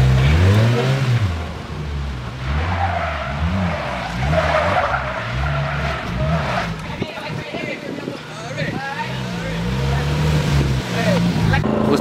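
Polaris Slingshot three-wheeler revving hard as it spins its rear tyre through a turn, the engine pitch rising and falling again and again. Tyre squeal and skidding come through in the middle.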